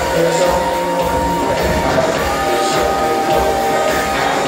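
Live rock band playing an instrumental stretch of the song with drum kit and electric guitars, long held notes over a steady beat, loud through the hall's PA.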